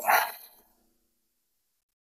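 A woman's drawn-out "okay" trailing off, then near silence.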